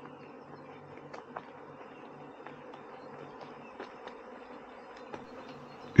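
Honeybees buzzing around their hives: a steady low hum, with a few faint ticks.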